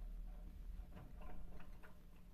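A budgerigar fluttering down off the roof of a wire cage and catching hold of the side bars, giving a quick run of about five light ticks in the second half.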